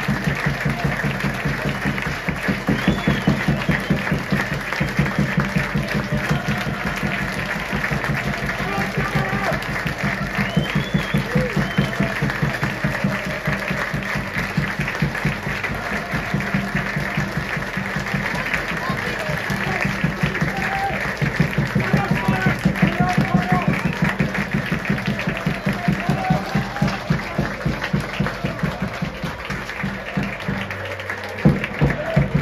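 Football stadium crowd applauding and talking, with music playing over it.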